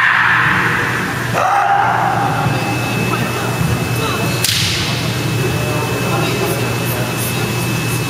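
Kendo competitors' kiai shouts, one at the start and another about a second and a half in, with a sharp crack about four and a half seconds in from a bamboo shinai strike, over a steady low hum from the hall.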